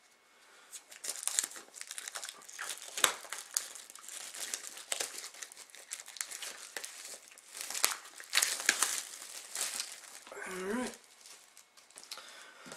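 Plastic shrink wrap being torn and peeled off a DVD box set: steady crinkling and crackling with sharp snaps, one especially sharp about three seconds in.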